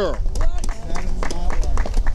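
Outdoor microphones picking up a strong low rumble, typical of wind on the mics, with scattered short clicks and a faint voice from the crowd during a pause in the speech.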